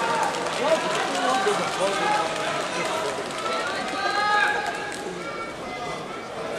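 Several men's voices calling out from the sidelines of a large hall, overlapping one another, typical of teammates shouting encouragement to judoka during a bout.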